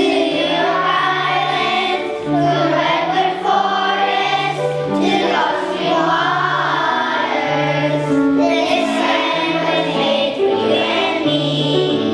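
A children's choir singing together, with instrumental accompaniment holding sustained low notes beneath the voices.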